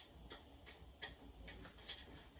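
Faint, light clicks of seasoning being mixed on a small plate, about two or three irregular ticks a second.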